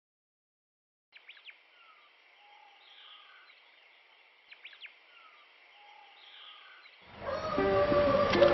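Faint birdsong over a quiet outdoor background, the same few seconds of chirps heard twice. Guitar music comes in loudly near the end.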